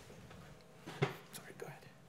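Faint, murmured speech, a few low words spoken off-mic, with a short click about a second in.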